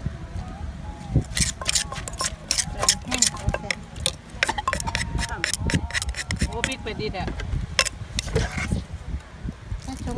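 Wooden pestle and plastic spoon working shredded green papaya in a clay mortar, making som tam: a quick, uneven run of knocks and clacks through most of the clip, over a low rumble.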